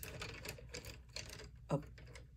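Faint, quick light clicks and taps of pens and pencils being handled as a pencil is picked out of a cup of pens.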